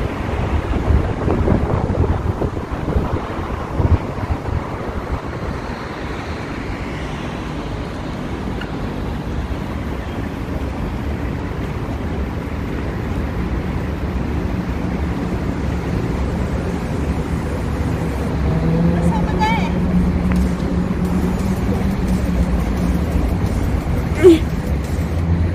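Outdoor street noise with traffic, and a vehicle engine's steady hum growing louder over the second half.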